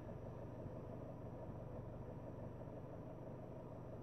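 Faint, steady low hum in a car's cabin during a pause, with nothing else happening.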